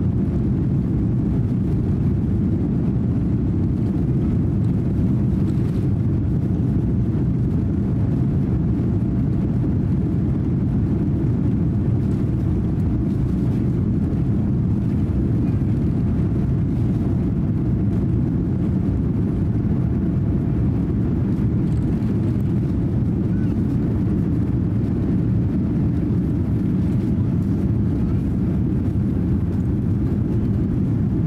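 Cabin noise of a Boeing 787-8 on its takeoff run: a loud, steady low roar from the engines at takeoff power and the wheels on the runway, carrying on through liftoff.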